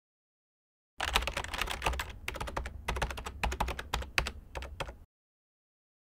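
Fast typing on a computer keyboard: a quick run of key clicks starting about a second in, with a short pause around two seconds in, stopping about a second before the end.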